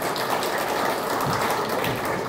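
An audience applauding, many hands clapping at once at a steady level.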